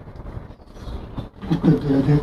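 Low steady background rumble, then a man's voice starts speaking about one and a half seconds in.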